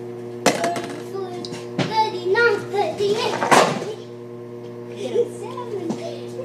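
Children's voices, with a few knocks and a short scrape, over a steady hum.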